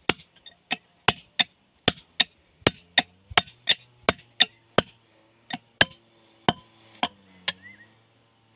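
Hand hammer striking a steel chisel set in a crack in a stone slab: sharp metallic blows about three a second, slowing to scattered strikes in the second half.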